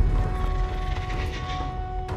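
Film soundtrack: a sustained orchestral score of held notes, mixed with a grainy, swelling sound effect that fades out near the end.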